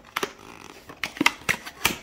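A cardboard envelope box being handled and its tuck flap opened: a handful of sharp cardboard clicks and taps with paper rustling, most of them between one and two seconds in.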